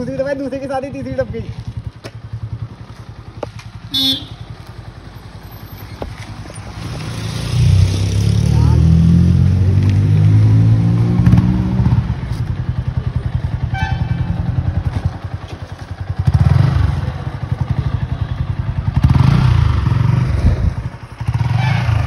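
Single-cylinder sport motorcycle engines (KTM RC 200 and Yamaha R15) running hard in a drag race, loudest from about eight to twelve seconds in and again around sixteen to twenty-one seconds.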